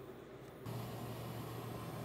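Faint steady background hum and hiss, stepping up slightly about a third of the way in as a low hum is added.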